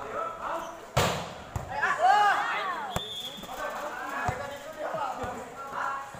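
A volleyball struck hard about a second in, the loudest sound, followed by a few lighter thuds of the ball. Players and spectators shout and call out after the hit.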